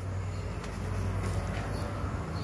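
Steady background noise with a low, even hum.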